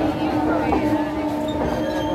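Passenger train rolling slowly into a station, heard from on board, with a steady pitched tone held throughout over the low rumble of the running gear.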